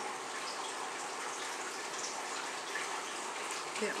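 A steady, even background hiss with no distinct events.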